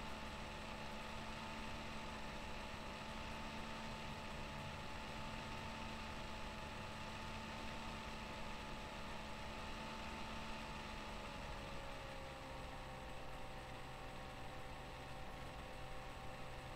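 Steady room-tone hum and hiss with a few held tones, which dip slightly in pitch about twelve seconds in.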